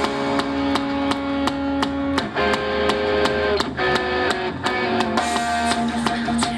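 Live rock band playing: electric guitar chords over a steady drum beat, the drum strikes coming about three times a second.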